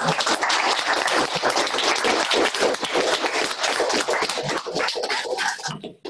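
An audience applauding, many hands clapping at once, cutting off just before the end.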